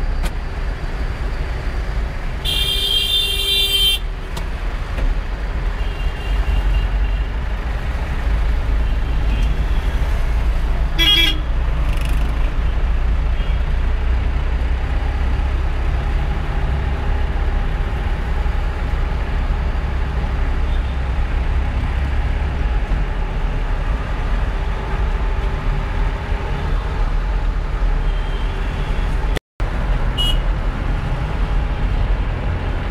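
Steady low rumble of a car in slow city traffic, heard from inside the cabin, with other vehicles' horns honking. One long horn blast comes about two to four seconds in and a shorter one around eleven seconds, with fainter toots in between. The sound cuts out briefly just before the end.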